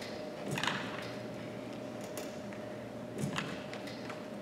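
Quiet room tone with a steady faint hum. Three brief soft noises come about half a second in, just after two seconds and just past three seconds, as a man stands up from a chair holding a pair of dumbbells.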